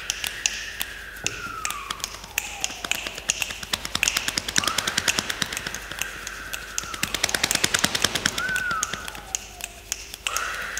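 A group soundscape made with bodies: many finger snaps and taps imitating rain, thickening and growing louder to a peak past the middle and thinning near the end, over mouth-made wind sounds that slide slowly down and up in pitch.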